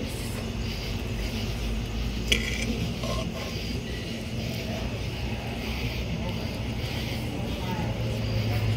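A metal fork scraping and pushing food across a metal tray, with one sharp click about two seconds in, over a steady low hum and background noise.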